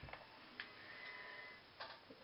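Near silence: quiet room tone with a soft thump at the start and a couple of faint clicks as hands let down long yarn braids.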